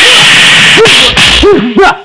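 Film fight sound effects of punches and blows landing: a long loud burst of hit noise, then short grunts and shouts from the fighters about a second in, mixed with more hits.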